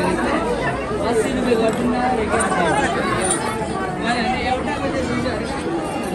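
Several people talking at once: a steady babble of overlapping voices.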